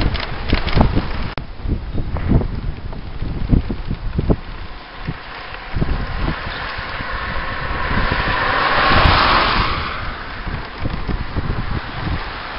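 Car passing on a wet road: its tyre hiss swells from about six seconds in, peaks about nine seconds in and fades away. Wind buffets the microphone throughout.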